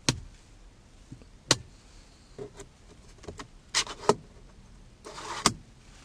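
Sharp plastic clicks of a 2012 Hyundai Avante's overhead map-light switch being pressed, a series of separate clicks with the loudest at the very start and about a second and a half in. A short rustle of interior trim being handled comes near the end.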